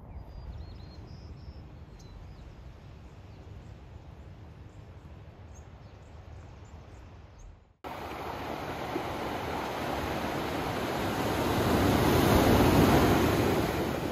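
Ocean surf washing onto a sandy beach, swelling to its loudest as a wave breaks a couple of seconds before the end. Before a sudden cut about halfway through there is only a quieter low outdoor rumble, like wind, with a few faint high chirps.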